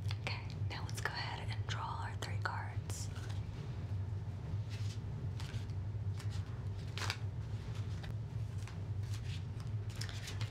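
Soft whispering for the first few seconds, then scattered quiet taps and clicks as tarot cards are handled close to the microphone, over a steady low hum.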